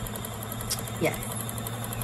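Toy mini washing machine for makeup sponges running with a steady small-motor hum as its drum spins a beauty sponge, like a real washer. A single light click comes just before the middle.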